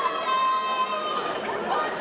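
Several voices chattering and calling out at once, one of them held as a long call about half a second in, over a steady background of distant crowd noise.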